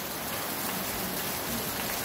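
Heavy rain falling steadily on flat concrete rooftops, an even, unbroken hiss of drops splashing on the wet surface.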